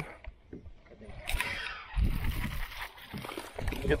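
Small sunfish splashing at the water's surface as it is reeled in and lifted from the water, with line handling and low wind rumble on the microphone.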